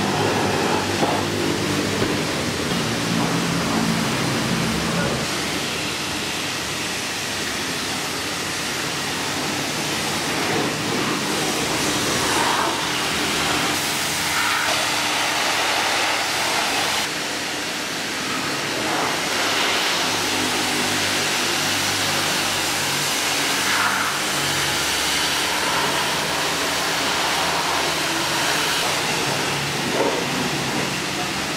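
High-pressure washer spraying water over a car's body, a steady hiss of spray.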